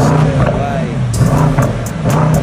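Twin-turbo V8 of a Brabus 700-tuned Mercedes-AMG E63 S wagon revving, under background music with a singing voice and a steady beat.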